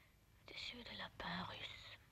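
A woman speaking softly under her breath in French, partly whispered, in two short phrases from about half a second in.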